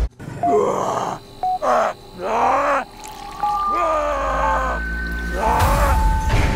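A creature's groans and moans, about five of them one after another, each bending in pitch, over dark ambient music. A low rumble swells through the second half.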